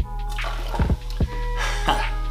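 Hip-hop background beat with a steady bass line and regular drum hits. Under it, soda is poured from a small stemmed glass into a glass boot.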